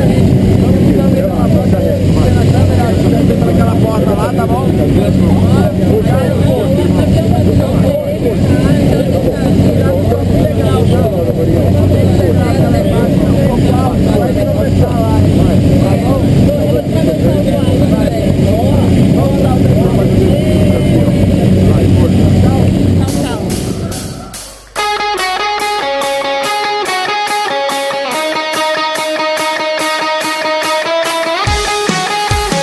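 Steady drone of a jump plane's engine heard inside the cabin, with muffled voices. Near the end it fades out and rock music with guitar and a regular beat takes over.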